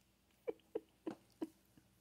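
Four short, high squeaks in quick succession from a Scottish terrier puppy about three and a half weeks old.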